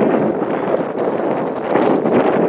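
Wind buffeting the microphone in a steady, loud rush.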